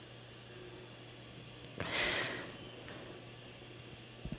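A woman's single audible breath, about half a second long, halfway through, just after a small mouth click. A low steady hum runs underneath.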